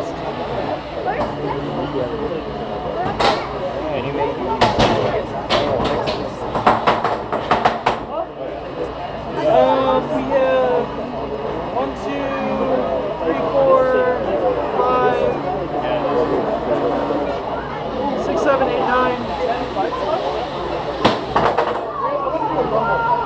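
3 lb combat robots, a drum spinner and a vertical-blade spinner, hitting each other in the arena with sharp clattering impacts: one hit about three seconds in, a rapid string of hits from about four to eight seconds, and another near the end. Crowd voices chatter throughout.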